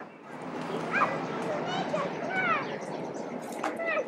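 Outdoor park ambience: a steady background of distant voices, with a series of short, high, rising-and-falling calls.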